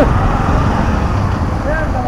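Steady roadside traffic noise with a low engine rumble.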